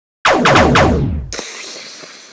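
Three rapid blaster-shot sound effects, each a sharp tone falling steeply in pitch, then a sudden hissing burst about a second in that fades away, the sound of the hit.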